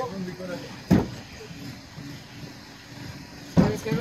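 A single sharp knock about a second in, from the aluminium mast-case truss being worked into place against the crossbeam, with low men's voices around it and a man starting to speak near the end.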